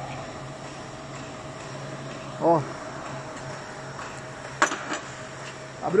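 Steady low machine hum in a lathe workshop, with one short sharp click a little past halfway.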